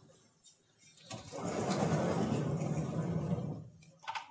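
Sliding lecture-hall blackboard panel being moved along its rails: a steady rumble lasting about two and a half seconds, starting about a second in.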